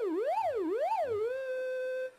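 Minimoog analog monophonic synthesizer holding one note while modulation swings its pitch evenly up and down, about two sweeps a second, so it wails like a siren. About one and a half seconds in, the modulation stops and the note holds at a steady pitch.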